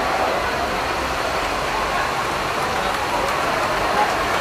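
Engines of heavy military trucks running steadily as they roll slowly past, over the chatter of a street crowd.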